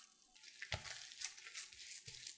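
Gloved hands pressing and spreading an oiled ball of dough on a silicone baking mat: quiet slick rubbing and squishing, with a soft thump about two-thirds of a second in.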